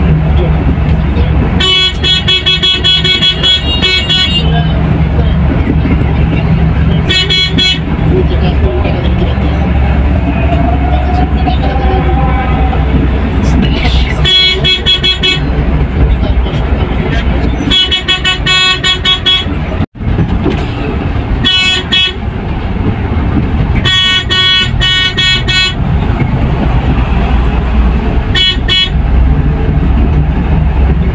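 A coach's horn sounding in about seven bursts of rapid, many-toned beeps, over the steady drone of the diesel engine and road noise heard from inside the cabin.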